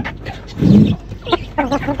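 Domestic pigeon giving one short, low coo about half a second in.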